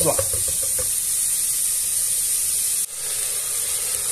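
Chopped onion and garlic sizzling steadily in olive oil in an aluminium pressure cooker while being stirred with a silicone spatula; the sizzle briefly drops out just before three seconds in.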